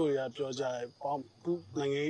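A man's voice speaking in short phrases, with a faint high chirring of insects behind it.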